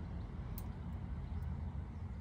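Low, steady outdoor background rumble with a couple of faint clicks, in a pause between speech.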